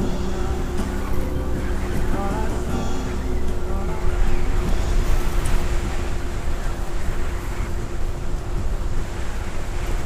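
Wind rushing over the microphone of a moving e-bike, with a steady hum underneath. Music plays over the first three seconds or so, then the wind rush goes on alone.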